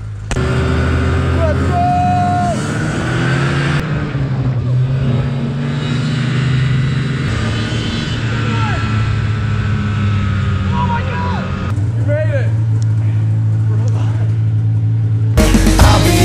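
Snowmobile engine running steadily while under way, a low even hum, with a few short voice calls over it. Music cuts in near the end.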